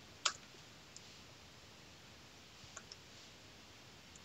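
A few faint clicks from computer input while text is typed into a form: one sharper click just after the start, a soft one about a second in, and a quick pair near three seconds, over quiet room hiss.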